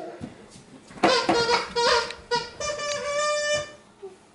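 A person's voice making drawn-out wordless sounds that bend in pitch, ending in one held note about a second long, as a needle goes into an arm.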